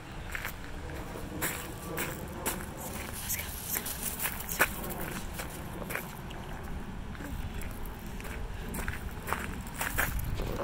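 Footsteps crunching on gravel: an irregular run of short crunches and clicks.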